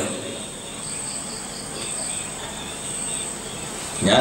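Crickets chirping: a steady high trill, with a quicker pulsed chirp of about four to five pulses a second for a little over a second in the middle.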